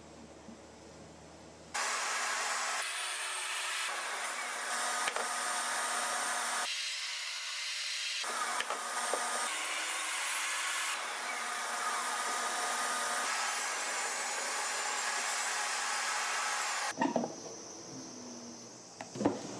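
Table saw running and cutting a small piece of wood held in a sliding jig against the fence. The saw noise comes in suddenly about two seconds in, holds steady with a few changes in pitch as the cut goes on, and cuts off about a second before the end.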